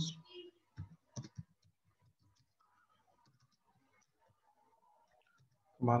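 A few short clicks of computer keyboard keys, bunched about a second in, then scattered faint ticks.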